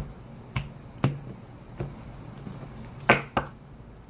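Oracle cards being shuffled by hand: a handful of separate sharp snaps and taps, the loudest about three seconds in.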